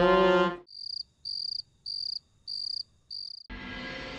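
Cricket chirping five times, short high-pitched chirps about two-thirds of a second apart, with almost nothing under them. Background music dies away just before the chirps and a music bed comes back in near the end.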